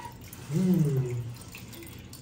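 A brief low murmured voice, falling in pitch, about half a second in, over the faint steady trickle of water from a small aquarium filter.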